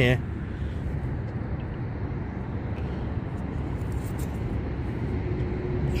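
Steady low rumbling background noise with rain falling, with no clear event standing out.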